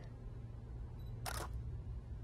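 A single-lens reflex camera's shutter fires once, a short mechanical click about a second and a quarter in, as a flash portrait is taken. A low steady hum lies underneath.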